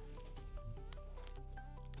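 Quiet background music: a simple melody of short stepped notes. Faint clicks and rustles of trading cards being handled, one a little louder near the end.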